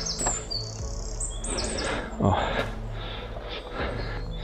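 Small songbirds chirping: short runs of high-pitched notes about half a second in and again around one and a half seconds in. A brief voice-like sound, the loudest moment, comes a little after two seconds.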